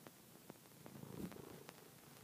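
A cat purring faintly close to the microphone, with a few soft clicks.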